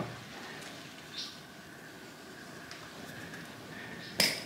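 Needle-nose pliers working at a nail stuck in a trailer tire's rubber tread, heard only as faint clicks and one brief scrape about a second in, over quiet room tone; the pliers fail to pull the nail out.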